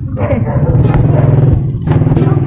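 A small engine running steadily close by, a loud, even low hum.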